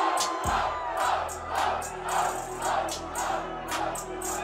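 Freestyle rap battle crowd cheering a punchline, shouting in rhythm about twice a second over a hip-hop beat whose bass comes in about half a second in.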